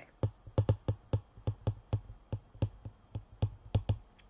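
Stylus tapping and writing on a tablet's glass screen as a word is handwritten: a quick, irregular run of light clicks, about six a second.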